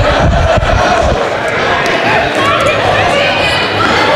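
A group of adults laughing, calling out and chattering over one another in a gymnasium, with running footsteps thudding on the floor in the first second.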